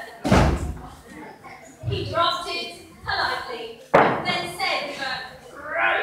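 A heavy thump on the hollow stage platform just after the start, followed by a second, sharper knock about four seconds in, with voices in between.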